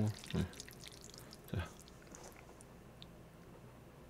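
Chopsticks stirring and lifting thick, cream-sauced instant truffle pasta in a bowl: faint sticky clicks with two soft knocks in the first two seconds, growing very faint after that.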